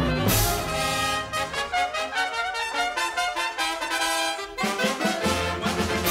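Orchestral cartoon music led by brass, trumpets and trombones, playing a quick run of short notes in the middle before the fuller bass comes back near the end.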